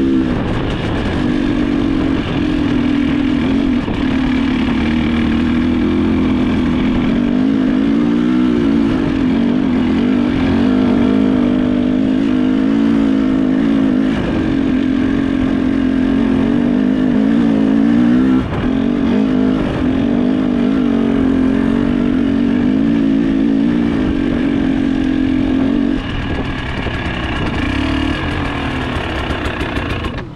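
Trail motorcycle engine running steadily under load, its pitch wavering up and down with small throttle changes, easing off slightly near the end.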